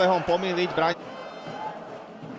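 Male commentator speaking Slovak, stopping about a second in; after that only a faint, steady background noise from the match.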